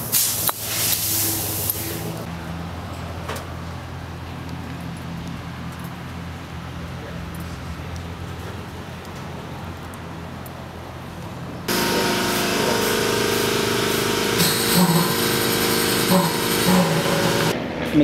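A steady low mechanical hum for about twelve seconds, with a short hiss near the start. It cuts abruptly to a louder whirring of shop machinery with hiss.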